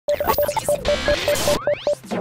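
Glitch-style electronic intro sound effect: a short beep at one pitch stuttering about five times a second amid bursts of crackling static, with several tones sweeping upward together near the end.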